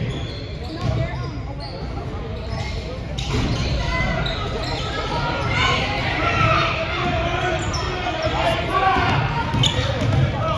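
Basketball bouncing on a hardwood gym floor in a large, echoing hall, with spectators' voices and shouts that grow louder from about three seconds in.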